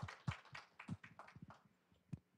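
Audience applauding with hand claps, thinning out and dying away near the end.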